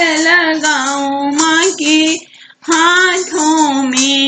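A high female voice singing a Bhojpuri devi geet (Navratri devotional folk song) without accompaniment, in long held and bending notes, with a short break for breath about two seconds in.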